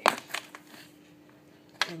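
Handling knocks and clicks from the hand-held phone being moved toward a wall socket: one sharp knock at the start and a few lighter clicks just after, then a quiet stretch with a faint steady hum, and another sharp click near the end.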